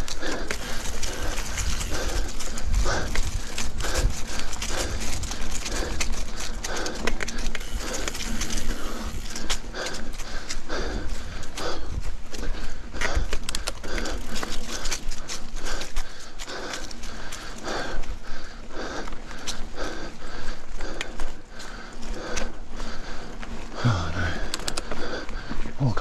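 A mountain-bike rider breathing hard and rhythmically while pedalling uphill, about one breath every second or less, over a steady low rumble.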